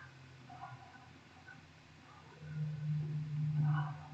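A low, steady hum comes in about two and a half seconds in, after a quiet start, and holds until just before the end.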